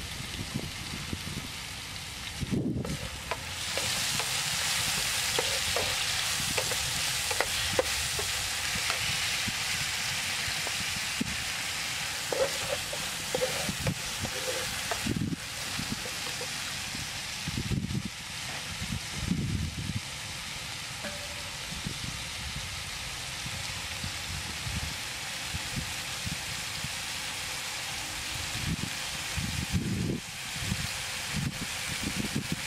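Pieces of beef sizzling in a frying pan as they are stir-fried, with a wooden spatula scraping and knocking against the pan; the sizzle is loudest early on and settles to a steady hiss. A few knife chops on a wooden cutting board come before the sizzling starts.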